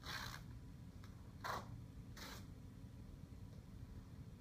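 Masking tape being pulled off the roll and stretched onto a whiteboard: three short, faint rasping rips, one at the start, one about a second and a half in and one just after two seconds.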